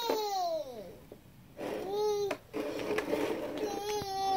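A baby's high-pitched babbling: long drawn-out vocal sounds that slide down in pitch, with a short break about a second in.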